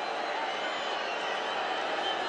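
Steady crowd noise from a large stadium audience: many voices blended into an even wash at a constant level.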